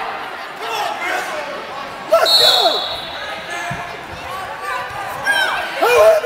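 Shouting voices from the sidelines of a wrestling bout, with one short, sharp blast of a referee's whistle about two seconds in and a few dull thumps a little later.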